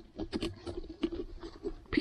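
Small pumpkin-carving saw cutting through raw pumpkin flesh in short, irregular strokes, working a stuck mouth segment loose.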